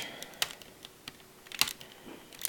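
Plastic Lego turret hatch worked open by fingers: a few small, sharp plastic clicks, the loudest a quick pair about a second and a half in.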